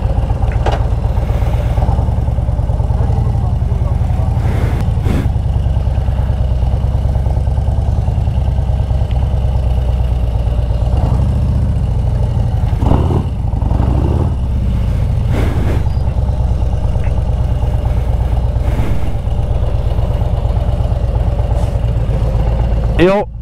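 Harley-Davidson Road Glide's V-twin engine running steadily at low revs while the bike rolls slowly, heard from the rider's seat.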